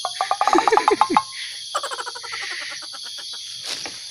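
A steady high insect drone, like crickets, runs throughout. In the first three seconds, two quick trains of rapidly repeated rattling call notes come over it, the second fading away.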